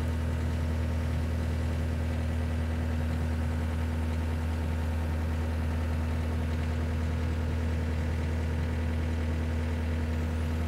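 Takeuchi TCR50 tracked dumper's diesel engine running at a steady idle, an even low hum with no change in speed.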